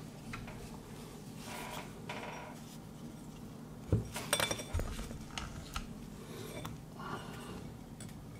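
Light handling of a drinking glass on a desk and a plastic pen-type pH meter, with a short cluster of sharp clicks and taps about four seconds in as the meter's tip knocks against the glass and goes into the water.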